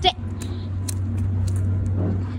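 A steady low engine rumble with a few faint clicks.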